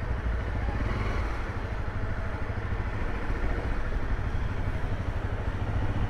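Single-cylinder four-stroke engine of a Honda CRF250L dual-sport motorcycle running steadily at low revs as the bike rolls slowly.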